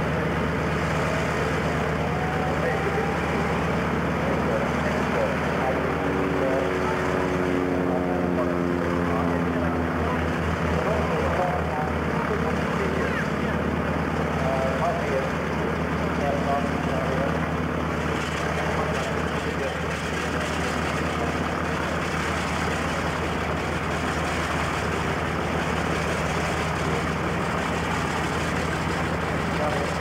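Radial engines of two Boeing Stearman biplanes idling steadily on the ground, propellers turning. A falling note runs for several seconds near the middle as an engine's speed drops.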